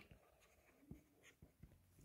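Faint taps and scratches of a stylus on a tablet screen during handwriting, a few light ticks against near silence.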